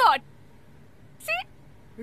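A woman's voice trailing off with a falling pitch, then a single short, high-pitched vocal sound about a second and a quarter later, with quiet room tone between.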